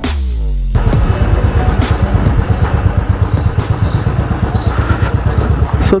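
Motorcycle engine running under way, with a quick, even pulsing exhaust beat. Background music ends with a falling sweep in the first moment before the engine comes through.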